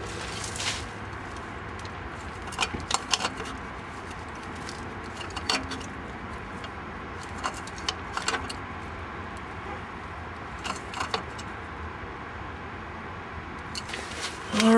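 Scattered metallic clinks and rattles of a band-type oil filter wrench against a new spin-on oil filter as it is tightened a quarter turn past finger tight, over a steady low hiss.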